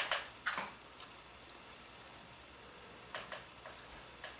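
Faint handling noise while the printer frame is handled and filmed: a sharp click at the start and another short one about half a second later, then quiet room tone with a few small ticks about three seconds in.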